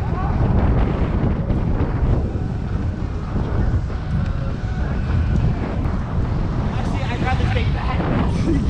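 Wind buffeting an action camera's microphone while riding a bicycle in city traffic: a steady low rumble.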